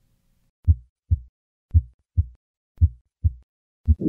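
Normal heart sounds heard through a stethoscope: three clean lub-dub beats (S1 then S2) about a second apart, with nothing between the two sounds, then the first sound of a fourth beat near the end. These are the normal beats played before the systolic ejection murmur of hypertrophic cardiomyopathy is added.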